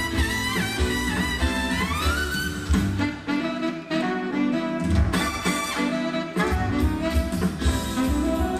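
Live jazz band playing an upbeat holiday number: saxophone, trumpet and trombone over electric guitar and upright bass, with a lead horn line that bends and slides up in pitch in the first couple of seconds.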